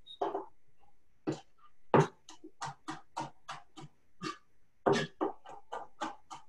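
Knife chopping parsley and pine nuts on a cutting board: a run of quick, even knocks, about three a second.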